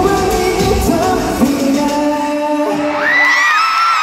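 The final sung line of a live pop song with a male voice over the backing track, the music ending about three seconds in. Then high-pitched screams from the arena crowd rise up and hold.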